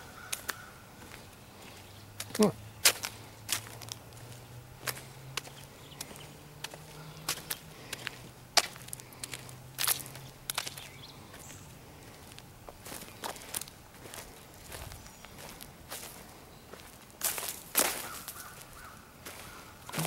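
Footsteps on a concrete path with scattered sharp clicks and taps at an uneven pace, over a faint low drone from about two seconds in until about halfway through.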